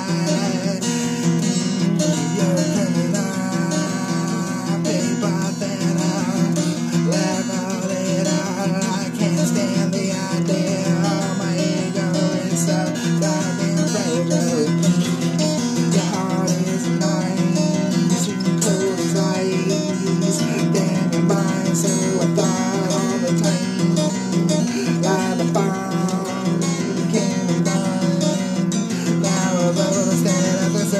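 Acoustic guitar music from a song demo, playing steadily throughout.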